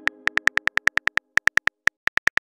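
Synthetic phone-keyboard typing clicks from a texting-story animation: rapid short ticks, about ten a second, in runs broken by two brief pauses, as a message is typed out letter by letter. A fading pitched tone dies away in the first half second.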